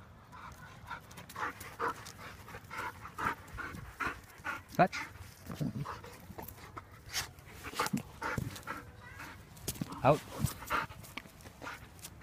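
Belgian Malinois panting hard and regularly, about two breaths a second, after a run to fetch its toy.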